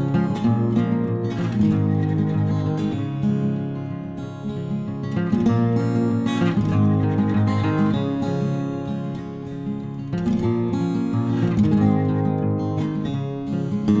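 Background music: acoustic guitar, plucked and strummed, playing steadily throughout.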